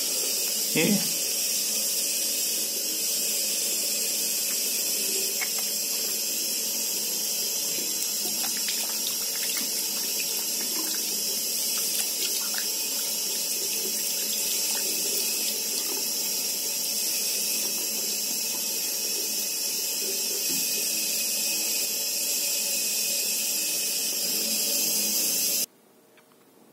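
Tap water running steadily into a washbasin as soaped silicone earplugs are rinsed between the fingers under the stream. The running water cuts off suddenly near the end.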